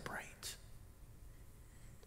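The end of a man's spoken word and a short faint breath about half a second in, then near silence: room tone with a faint low hum.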